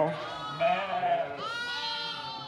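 Ewes and lambs bleating in a lambing barn: a falling call at the start, a short call about a second in, and a longer, higher bleat near the end. The sheep are calling to find each other again after the ewes ran off to the feed and left their lambs behind.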